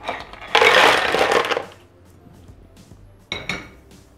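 Live clams (vongole veraci) poured from a glass bowl into a Thermomix's plastic Varoma steaming tray, their shells clattering together for about a second. A couple of sharp knocks follow near the end.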